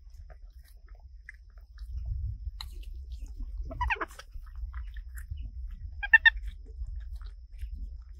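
Young macaques chewing and smacking on soft jackfruit pods, with small wet clicks throughout. A short high-pitched call sounds near the middle and a louder, brief one about six seconds in.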